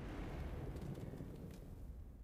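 Online slot game's transition sound effect: a steady, low rumbling noise under the paw-print wipe into the free-spins round.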